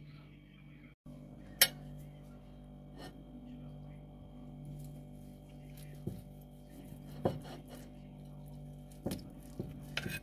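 Knife and fork cutting a piece of baked turkey on a china plate, with scattered sharp clinks of metal against the plate, the loudest about a second and a half in. A steady low hum runs underneath.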